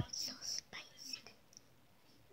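A young child whispering close to the microphone: a few short breathy syllables in the first second or so, then quiet.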